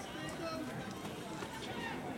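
Indistinct voices of people talking in the distance.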